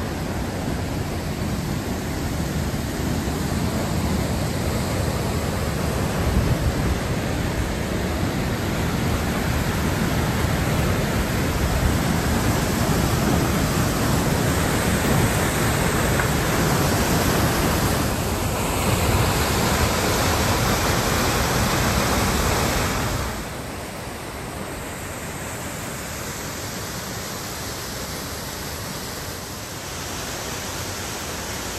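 A small waterfall in a rocky gorge, its water rushing steadily. A little over two-thirds of the way through, the rush drops suddenly to a softer, less deep sound.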